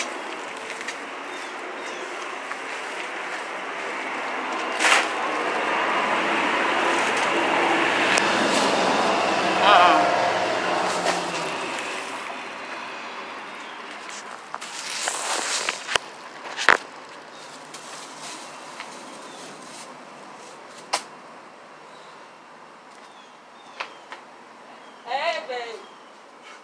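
A passing vehicle: a rushing noise with a low rumble swells over several seconds and fades away. Later come a few sharp knocks from the phone being handled, and a brief voice near the end.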